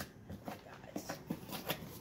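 Faint scattered taps and rustles of a cardboard box being opened by hand, its flaps lifted and handled.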